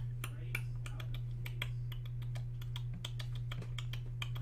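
Typing on a computer keyboard: quick, irregular key clicks, several a second, over a steady low hum.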